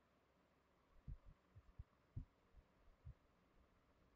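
Near silence broken by about seven faint low knocks between one and three seconds in: a stylus tapping and pressing on a drawing tablet while writing.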